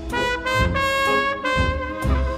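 Jazz band playing, with a trumpet leading a quick phrase of short notes over trombones and low beats.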